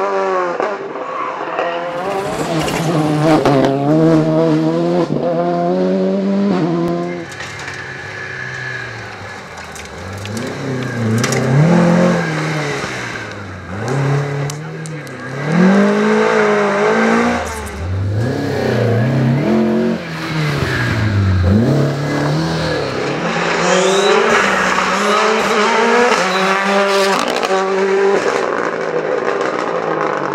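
Rally cars driven hard on a stage, one after another: engines revving high, dropping through gear changes and lifts, then climbing again as each car accelerates away.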